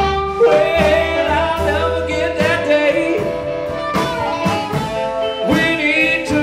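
Live blues band playing: a harmonica cupped to a microphone carries a line of bending notes over electric archtop guitar, upright bass and drums.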